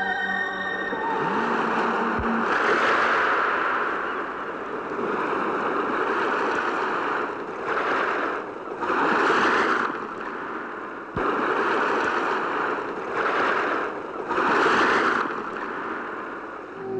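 Sea surf crashing and washing over shoreline rocks, rising and falling in a series of swells every second or two. Soft background music fades out in the first second.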